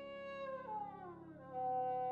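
Trumpet holding a note, then sliding down in pitch in a smeared glissando, and at about a second and a half in attacking a louder, higher held note, over grand piano accompaniment.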